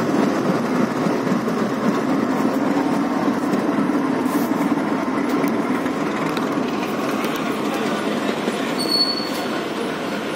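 A freight train of covered goods wagons rolls by on the rails in a steady rumble of wheels. A GE WDG6G diesel-electric locomotive passes near the end, and a brief high squeal comes about nine seconds in.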